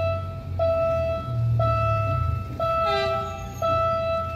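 Level-crossing warning signal sounding an electronic ding about once a second, each tone held just under a second before the next, warning of an approaching train. A low rumble runs underneath.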